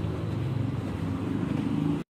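An engine running steadily, a low even pulsing with a faint hum over it.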